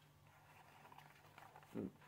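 Near silence: a few faint clicks and rustles of fingers handling and turning a small cardboard model-car box, with a short hummed 'mm' near the end.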